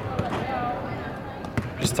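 Basketballs bouncing on a hardwood court in a large arena hall, a few sharp knocks against a background of distant echoing activity.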